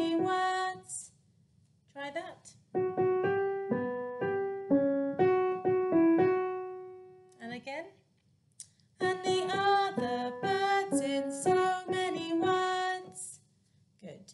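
Keyboard playing a simple melody note by note, zigzagging between a few pitches, with the last note left to ring out and fade about seven seconds in. A woman sings the line of the children's song before and after it.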